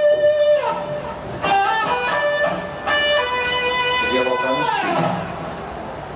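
Stratocaster-style electric guitar in a clean tone, playing a short melodic phrase of single picked notes, each ringing into the next: notes stepping along the scale, then a leap of a third.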